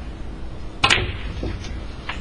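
Snooker cue tip striking the cue ball, followed at once by a sharp clack as the cue ball hits the black, about a second in; a few fainter ball knocks follow.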